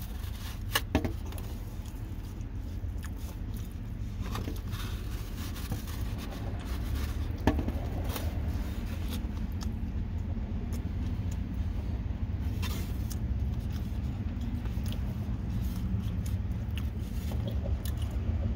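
Scattered scrapes and clicks of a styrofoam takeout clamshell being handled while food is eaten from it, over a steady low rumble in a car's cabin.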